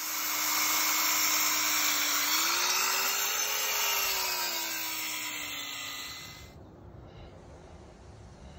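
Corded circular saw cutting through asphalt to make a straight edge. The motor tone climbs briefly near the middle of the cut and sinks back as the blade bites again. It stops about six and a half seconds in.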